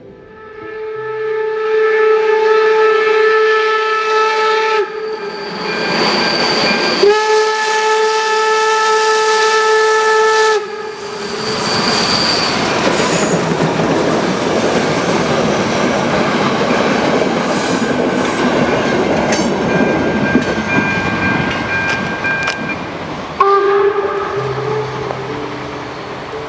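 Steam locomotive whistle blowing long steady blasts: one of about five seconds at the start, another of about three and a half seconds a few seconds later, and a third near the end. In between, the passing steam train makes a loud rushing, rattling noise.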